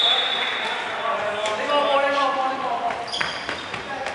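Dodgeball play echoing in a sports hall: balls bouncing and hitting the wooden floor with sharp knocks, and players calling out. A referee's whistle sounds steadily for about a second at the start, and a second short, shrill whistle comes just after three seconds.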